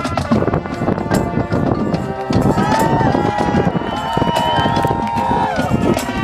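High school marching band playing: the drumline plays busy, rapid rhythms, and from about two and a half seconds in the brass scoop up into long held chords.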